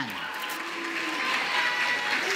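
Studio audience noise: a steady hiss of light clapping and crowd murmur, with a faint steady tone underneath.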